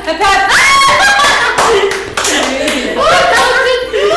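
Hands clapping, mixed with excited women's voices.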